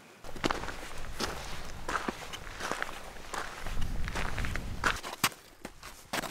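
Footsteps of a hiker walking over dry grass and stony ground, one step roughly every two-thirds of a second, with a low rumble on the microphone for a second or so near the middle.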